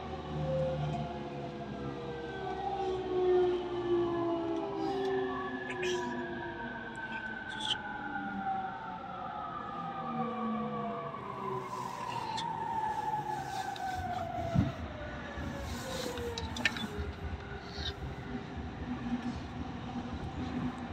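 E231-1000 series electric train's inverter and traction motors whining in several tones that fall steadily in pitch as the train brakes into a station, heard from inside the car. The whine fades out as the train comes to a stop, with a few sharp clicks and knocks near the end.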